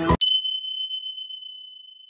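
A single bright bell-like chime, struck once and ringing with a clear high tone that fades away slowly.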